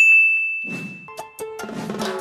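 A single bright ding sound effect at a title card, ringing out and fading over about a second and a half. A few musical notes of a jingle follow in the second half.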